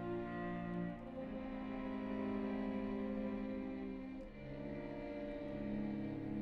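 Violin and cello playing a duo in long, sustained notes with vibrato, the harmony moving to new notes about a second in and again about four seconds in.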